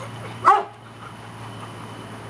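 A dog barks once, a single short loud woof about half a second in, over a steady low hum.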